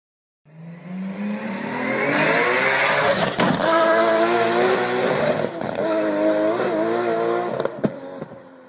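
Racing-car sound effect: an engine revs up with rising pitch and a burst of hiss, a sharp click about three seconds in, then the engine holds high revs with a couple of wobbles before fading out near the end.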